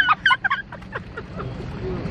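A woman laughing: a few quick, high bursts in the first half second that trail off into softer ones.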